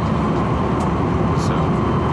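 Passenger train running, heard from inside the carriage: a steady low rumble with a faint steady whine over it.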